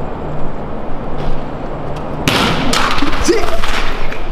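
A sudden loud rushing hiss starting about halfway through and lasting nearly two seconds: a shaken plastic Coke bottle bursting open and spraying.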